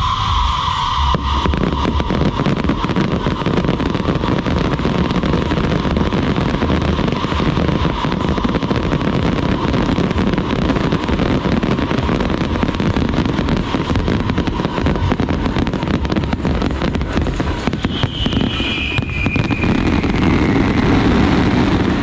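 Aerial fireworks going off in a dense, continuous barrage of bangs and crackling bursts, starting about a second in and keeping up without a break.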